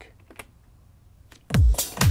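A few faint computer-keyboard clicks, one of them the space bar starting playback, then about one and a half seconds in a finished electronic dance track mixdown starts loudly on a heavy kick drum.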